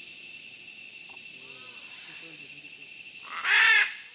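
Nature ambience: a steady high hiss with faint bird-like calls, then one loud harsh bird call near the end.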